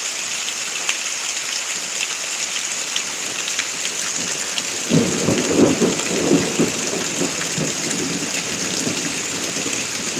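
Heavy rain falling steadily, with scattered close drops ticking. About five seconds in, a roll of thunder rumbles up and fades over a few seconds.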